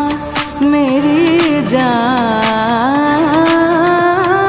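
Bollywood film song playing: a woman sings long, ornamented, wavering lines over a steady beat, with a brief drop in the music just after the start.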